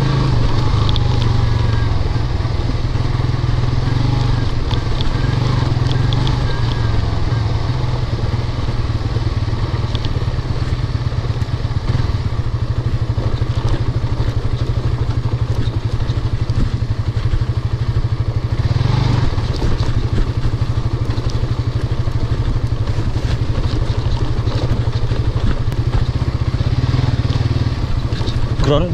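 Suzuki GSX-S150's single-cylinder engine running steadily as the bike is ridden along a rough dirt track, heard from the rider's seat, with scattered knocks and rattles as it goes over the bumps.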